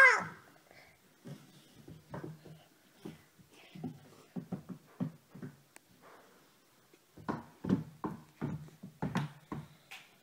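A toddler making short, soft wordless vocal sounds close to the microphone: a string of brief sounds, a pause of about a second and a half in the middle, then another string with a few sharper clicks mixed in.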